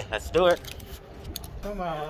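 A man says "let's go", then a brief metallic jingle with a few sharp clicks about a second in, as a door is opened and he walks into the shop.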